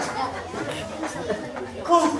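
Background chatter of several people talking at once in a large hall, with no single voice standing out.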